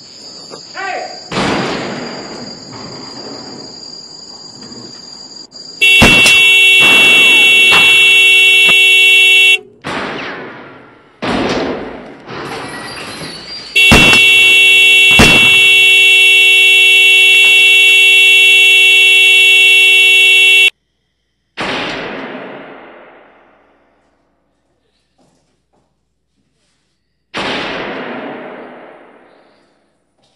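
Film soundtrack: a loud, steady horn-like blare sounds twice, several seconds each time, among sharp bangs. Near the end come two bangs that die away slowly.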